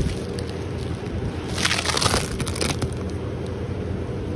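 A crackling scrape of wooden beehive equipment being handled, lasting about a second from a little past one and a half seconds in, over a steady low hum.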